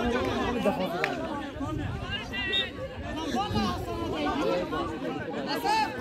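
Many voices of spectators and players chattering and calling out at once, with laughter about a second in.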